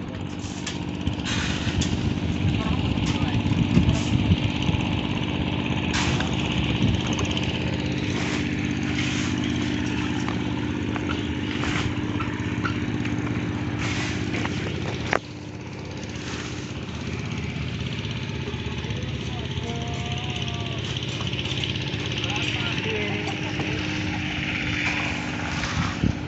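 A small engine runs steadily throughout, with a few sharp knocks from the concrete work about 6, 12 and 14 seconds in.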